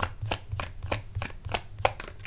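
A deck of tarot cards being shuffled by hand, a quick run of crisp card slaps about five a second.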